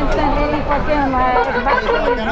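People talking over one another in an outdoor street argument, with crowd babble behind.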